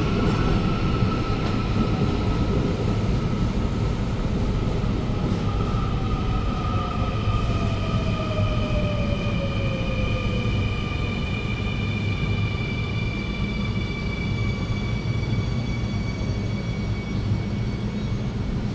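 Seoul Subway Line 2 electric train pulling into the station and braking to a stop: a steady rumble of wheels on rail with several motor whines slowly falling in pitch as it slows.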